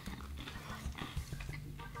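Chewing and small wet mouth noises of people eating steak sandwiches: irregular soft clicks over a faint low steady hum.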